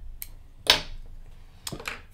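Small scissors snipping the tying thread at the head of a hand-tied bucktail lure: one sharp snip about two-thirds of a second in, with a few lighter clicks of handling before and after.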